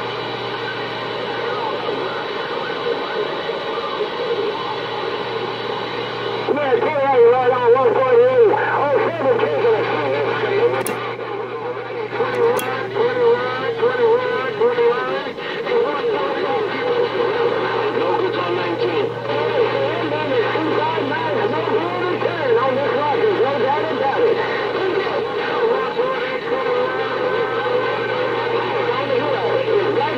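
CB radio receive audio through the radio's speaker: a steady, buzzy carrier tone, joined about six seconds in by garbled, unintelligible voices warbling through it until the end, while a strong signal holds the meter up.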